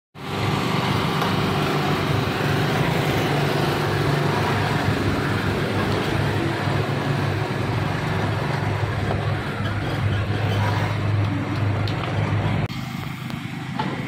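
City road traffic noise: the engines of passing cars and motorcycles with a steady low hum. It drops in level abruptly near the end.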